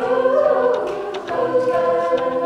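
A cappella vocal group singing sustained chords with a lead voice in front, and short beatboxed percussion hits keeping the beat about twice a second.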